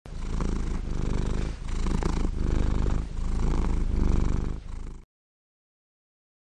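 A cat purring close to the microphone, the purr swelling and dipping with each breath, in and out. It cuts off suddenly about five seconds in.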